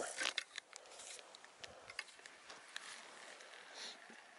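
Faint, irregular small clicks from handling a spinning rod and reel, with a brief soft hiss near the end.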